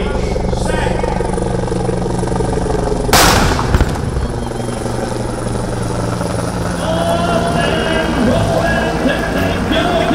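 One loud cannon blast about three seconds in, from a ceremonial howitzer firing the start of the handcycle and wheelchair race, its boom trailing off over about a second, over a steady low drone.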